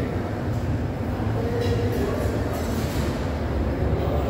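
Steady low rumble of a shopping mall's indoor ambience, with faint voices in the background.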